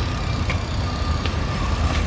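Mountain bikes rolling across paving stones: a steady low rumble with a faint thin whine and a few light clicks.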